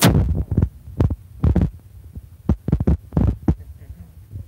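Footsteps walking on a hard floor: irregular low thumps, about two a second.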